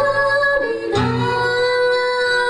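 Live acoustic performance: a female singer holds long sung notes over acoustic guitar. The note slides down a little past half a second, and a new guitar chord and held note come in about a second in.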